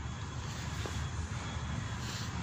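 Steady low rumble with hiss from outdoor background noise, even and unbroken.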